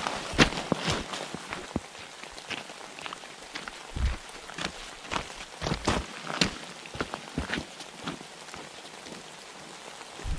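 Footsteps crunching on a gravel road at a walking pace, over a steady hiss of rain. A dull thump comes about four seconds in, and the steps thin out near the end.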